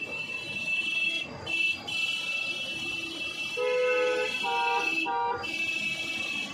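Street noise: a steady high-pitched whine that drops out briefly a few times, with three short horn toots in the second half, the first the longest.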